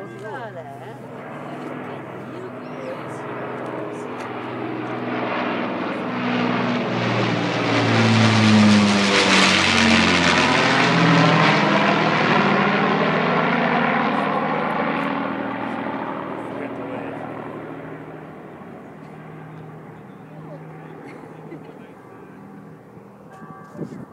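Avro Lancaster bomber's four Rolls-Royce Merlin piston engines droning in a low flypast: the sound builds, is loudest about nine seconds in, then fades away as the pitch drops with the plane passing overhead.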